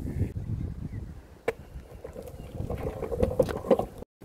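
Wind rumbling on the microphone, fading after the first second or so, followed by a few sharp clicks and a faint pitched sound in the second half.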